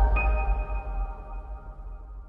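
A logo sting: a deep bass boom under a cluster of held, ringing tones. A higher ping-like tone joins just after the start, and the whole sound slowly fades away.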